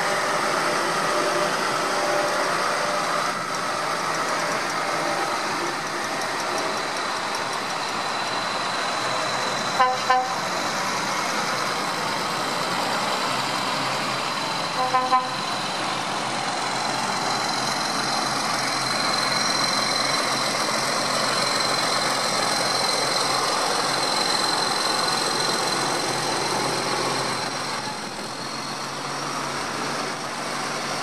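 Tractor engines running as a line of tractors drives past. A horn gives a double toot about ten seconds in and a triple toot about five seconds later.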